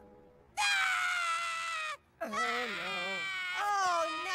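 Cartoon baby character wailing: two long, high cries, the first falling in pitch, the second wavering.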